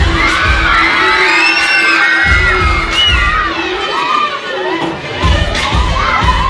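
An audience of children shouting and screaming excitedly all at once, many high voices overlapping.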